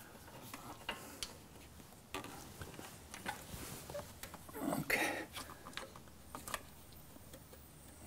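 Faint scattered clicks and scrapes of a plastic pry tool working a heat-hardened, stuck rubber seal off the turbocharger compressor inlet, with a louder scuff about five seconds in.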